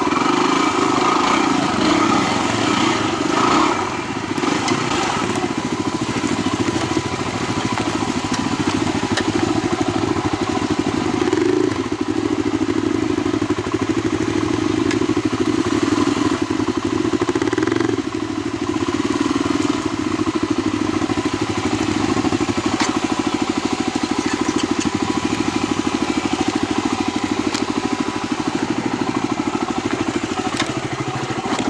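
Yamaha WR250R's 250 cc single-cylinder engine running at low, fairly steady revs on slow technical trail, with brief easings of the throttle about 4, 12 and 18 seconds in.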